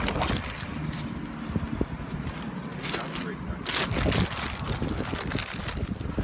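A person chewing a big mouthful of sub sandwich close to the microphone, with small wet clicks of the mouth and a low outdoor rumble behind it.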